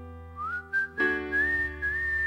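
A man whistling a melody into a microphone over sustained piano chords. The whistle slides up into its first note about half a second in and steps up through a few notes, and a new piano chord is struck about a second in.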